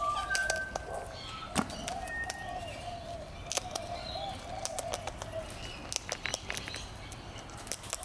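Sulphur-crested cockatoo eating seed from a hand: its beak makes irregular sharp clicks and crunches as it picks up and cracks the seeds. A faint wavering bird call runs beneath for the first five seconds or so.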